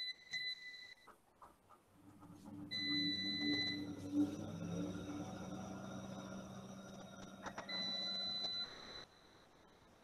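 Faint, steady high electronic tone heard in three short stretches, near the start, about three seconds in and about eight seconds in, over a low hum that runs from about two seconds in until it cuts off about nine seconds in.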